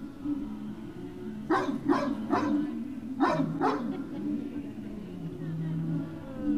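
A dog barking: a quick run of three barks about a second and a half in, then two more about a second later.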